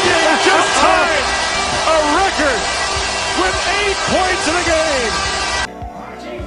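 Background music mixed with excited voices and arena noise from a hockey broadcast. About two-thirds of a second before the end it cuts off abruptly to a quieter, thinner track.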